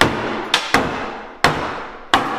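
Hammer blows on kitchen cabinetry being demolished: four sharp strikes, the middle two close together, each trailing off with echo in the bare room.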